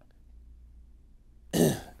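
A man clearing his throat once, a short rough burst about one and a half seconds in, after a pause with only quiet room tone.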